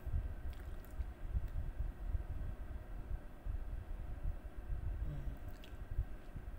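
Electric fan oven running while baking, an uneven low rumble.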